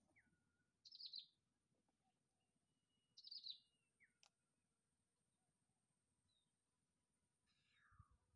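Near silence broken by two short, high bird chirps, one about a second in and another about two seconds later, with a few faint thin whistles between them.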